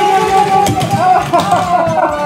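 A drawn-out excited 'ohh' from a person, held and slowly falling in pitch. Light clicks and rattles of small plastic toy cars running down a plastic spiral race track sound under it.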